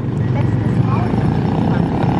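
Steady low rumble of a motor vehicle engine running nearby, with faint voices in the background.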